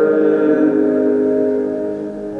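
A chord of sung church psalmody held steadily on several notes, easing off near the end.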